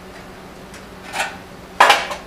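Metal parts being handled: a faint clink just past a second in, then a sharp metallic clank near the end.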